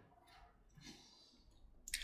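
Near silence, with a faint breathy exhale of e-cigarette vapour and a small mouth click near the end.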